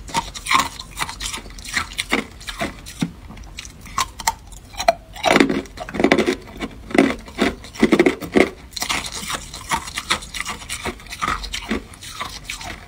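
Hard clear ice being bitten and chewed close to the microphone: a run of irregular, crisp crunches, thickest in the middle.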